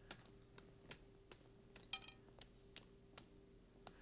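Brittle spun-caramel cage cracking as it is broken over the cake: about ten faint, sharp little clicks of snapping caramel strands, with a brief cluster about two seconds in.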